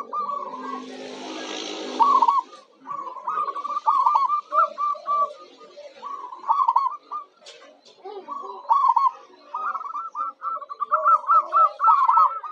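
Zebra doves (local perkutut) cooing in runs of quick, short notes, broken by brief pauses. In about the first two seconds a noisy sound lies under the calls.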